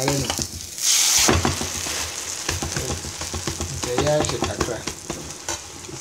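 Egg omelette frying in oil in a frying pan, sizzling steadily, with a slotted spatula scraping and tapping against the pan. The sizzle flares up loudly about a second in.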